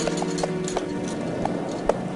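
Clip-clop hoof sound effect for a puppet horse walking: a few scattered clops over background music with held tones.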